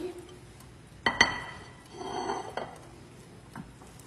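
A plate set down on the counter with one sharp, ringing clink about a second in, followed by a softer clatter around two seconds in as it is shifted into place.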